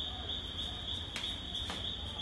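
Crickets chirring steadily in a high, even band, with two faint clicks in the second half.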